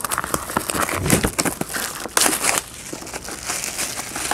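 Plastic shrink wrap on a card box crinkling and crackling as fingers pick at it and the box is handled, with a louder stretch of crackling about two seconds in.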